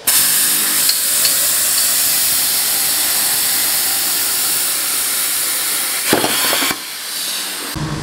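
CNC plasma tube notcher's torch cutting steel tubing: a loud, steady hiss of the plasma arc, which gives way about six seconds in to a brief different burst and then a quieter stretch.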